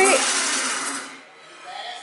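Kitchen sink garbage disposal running with a noise that the owner takes for something caught inside it, then fading away over about a second as it winds down.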